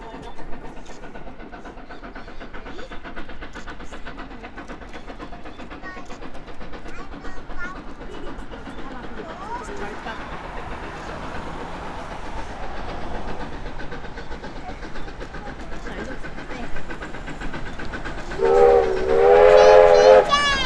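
Steam locomotive hauling a passenger train up a bank, its exhaust beats and running noise growing louder as it approaches. Near the end the locomotive sounds a loud steam whistle blast lasting about two seconds.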